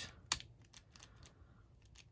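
Tombow Monograph mechanical pencil's plastic mechanism clicking as it is handled: one sharp click just after the start, then a run of light, irregular clicks.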